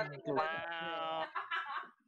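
A person's voice on a voice call: a brief low vocal sound, then one long drawn-out wordless vocal sound held for over a second before it cuts off near the end.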